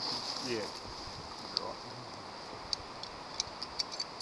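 Faint sharp clicks of a carabiner and climbing rope being handled, four or five scattered light ticks over a steady high hiss.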